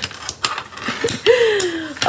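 A few light clicks, then a woman's drawn-out wordless vocal sound, like a long 'ohh', sliding down in pitch over most of the last second.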